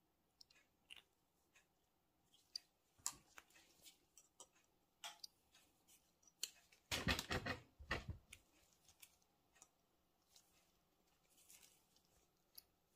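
Scattered small metal clicks and scrapes of pliers gripping and turning a bent brass fitting in a metal carburetor adapter, with a dense burst of louder clicking about seven seconds in.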